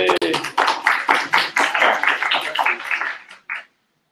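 A small audience applauding, with a cheer at the start; the clapping thins out and stops about three and a half seconds in.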